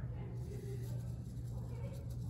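Faint, soft trickle of crushed walnut shells poured through a plastic funnel into a fabric pincushion, over a steady low electrical hum.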